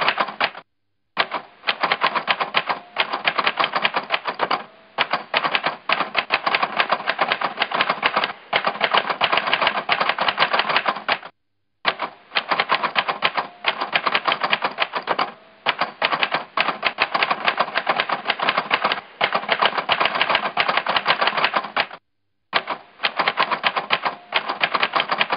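Rapid, continuous clatter of typewriter keystrokes, many strikes a second. It cuts out completely for a moment three times: about a second in, about halfway through, and near the end.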